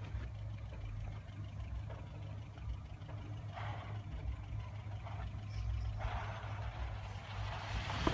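Toyota pickup truck's engine running low and steady while the truck crawls down a rock ledge, with patches of rough noise about three and a half seconds in and again from about six seconds on.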